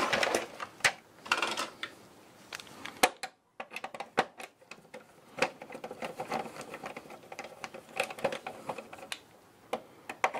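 Plastic printer chassis knocking and clicking as it is handled, then a screwdriver working screws out of the side frame: a run of small, quick clicks and rattles.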